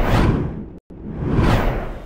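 Two whoosh transition sound effects of a news logo sting. Each swells and fades; the first cuts off sharply just before a second in, and the second peaks about midway through the second half.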